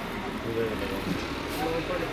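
Indistinct background voices over a steady low hum of ambient noise.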